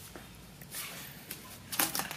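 Quiet room tone with faint rustling, a brief breathy hiss about a second in and a small click near the end.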